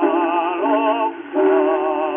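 Operatic tenor singing in Czech from a 1905 acoustic G&T gramophone disc, holding notes with a wide vibrato. The sound is thin and narrow, with no deep bass or high treble. The voice stops briefly a little over a second in, then takes up a new held note.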